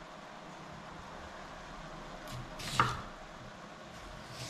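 A chef's knife cutting through food onto a wooden cutting board: one short cut about three-quarters of the way in, otherwise the quiet of a small room.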